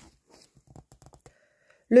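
A picture-book page being turned: a soft click, then faint paper rustling and small clicks. A woman's reading voice begins right at the end.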